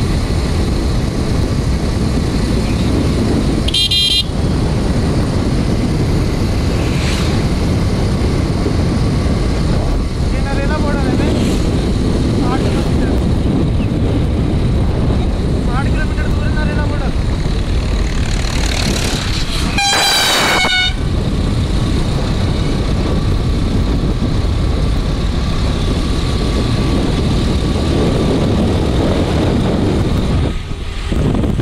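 Wind rushing over the microphone and engine noise from a moving motorcycle or scooter on the road, with a short high horn beep about four seconds in and a longer, louder vehicle horn blast about twenty seconds in.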